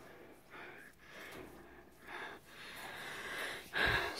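A person breathing close to the microphone: about four soft breaths, the last one longer.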